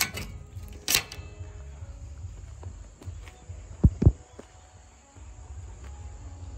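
Bicycle rear-wheel ring lock being pushed shut: a sharp metallic click at the start and another with a brief ring about a second later. Two dull thumps follow about four seconds in, over a steady high insect trill.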